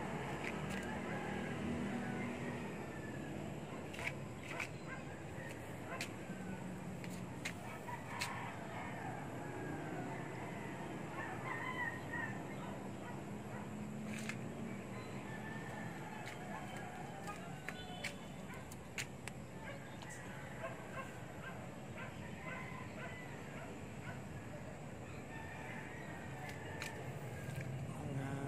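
Faint outdoor background with scattered bird calls, a low steady hum and occasional sharp clicks.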